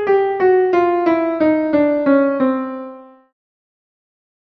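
A piano playing single notes that step steadily downward in pitch, about three notes a second, as a higher-to-lower listening example. The last and lowest note rings and fades out a little past three seconds in.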